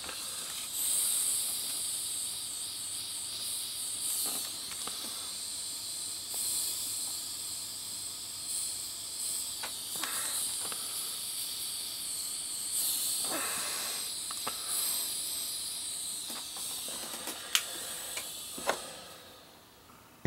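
Steady high-pitched hiss of a hot-air heat gun blowing, as used to shrink heat-shrink tubing over soldered wire joints, with a few light clicks of handling. It fades out near the end.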